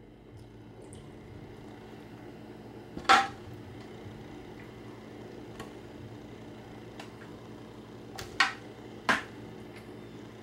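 Metal tongs clinking against a metal baking pan as chicken wings are set down in it: three sharp clinks, one about three seconds in and two close together near the end, with a few faint ticks between, over a steady low hum.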